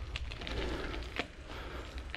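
Riding noise on a dirt forest path: a steady low wind rumble on the microphone with faint crackling and a few small clicks from tyres rolling over grit and twigs.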